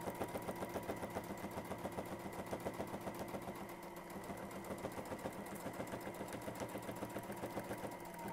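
Computerized domestic sewing machine stitching a straight line at a steady speed. The needle strokes come in a fast, even rhythm over a steady motor whine.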